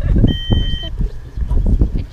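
An electronic beep: a steady high tone held for about half a second, shortly after the start, over a low rumble and brief voice fragments.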